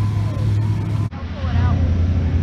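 Car engine idling steadily with a low, even hum. About a second in, an abrupt cut switches to another steady engine hum with a faint voice over it.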